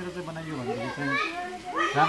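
People talking in Nepali, several voices overlapping.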